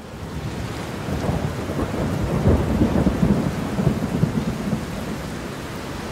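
Thunderstorm: steady rain with a deep rumble of thunder that fades in, swells about two seconds in and eases off toward the end.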